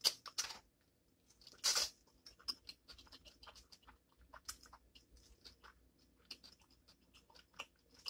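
Close-up mouth sounds of a person eating instant ramen noodles: wet chewing and lip smacks in an irregular stream, with one longer, louder slurp about a second and a half in.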